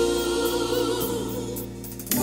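Gospel music: a choir singing a long held chord that fades toward the end.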